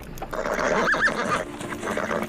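A horse neighing once, the call peaking in two quick rises and falls about a second in.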